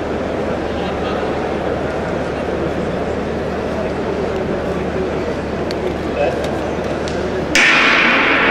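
Steady murmur of an indoor arena crowd while sprinters wait in the blocks. Near the end the starting gun fires with a sudden loud crack, and the crowd noise jumps up as the race gets under way.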